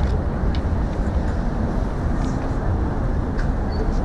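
Steady city street noise, with traffic running, picked up by a body-worn camera's microphone.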